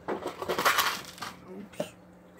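Clattering of objects being handled and moved about, with light clinks and knocks.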